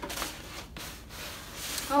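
A large rolled sheet rustling as it is unrolled and slid across a wooden tabletop: a papery rustle with a short pause a little before the middle.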